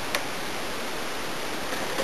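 Steady, even hiss of background noise, with one light click just after the start.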